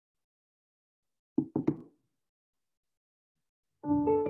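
Three quick knocks in a row about a second and a half in, then silence. Piano music starts just before the end.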